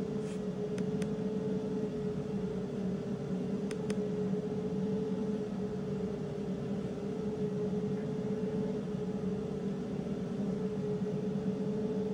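Steady machine hum with a constant tone over a fan-like whir, from the running 60 W MOPA fibre laser's cooling fans. A few faint clicks come in around the first and fourth seconds.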